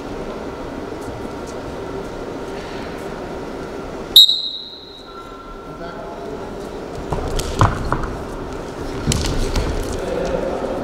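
A referee's whistle blows once, short and shrill, restarting the wrestling bout after a stoppage. In the last few seconds there are a few knocks and shouts as the wrestlers engage.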